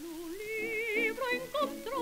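A soprano-with-orchestra Spanish song played from a Brunswick 78 rpm record: a melody line with wide vibrato over orchestral accompaniment, climbing in pitch about half a second in.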